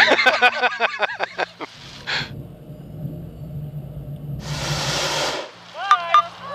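Hot air balloon's propane burner firing: a brief hiss about two seconds in, a low roar for the next few seconds, and a louder hiss lasting about a second near the end.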